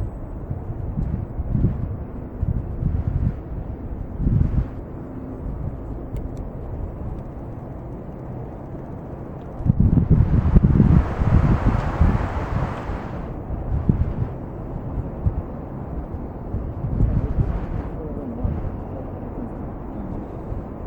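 Wind buffeting the camera microphone in uneven gusts, with a louder rush of noise about ten seconds in that lasts some three seconds.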